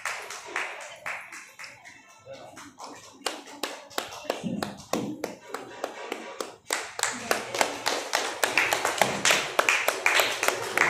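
Audience hand clapping: scattered claps at first, thickening into steady applause about seven seconds in.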